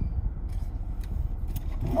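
Low, steady rumble of a car idling, heard from inside the cabin.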